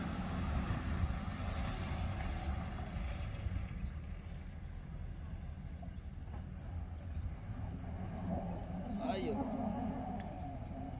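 Distant Mitsubishi Pajero engine running steadily as the 4x4 crawls off-road through tea bushes, heard as a low rumble. A person's voice is heard briefly near the end.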